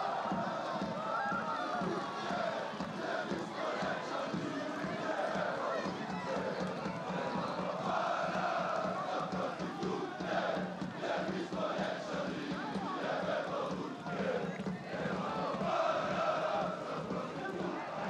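Football stadium crowd chanting and singing together in a steady mass of voices.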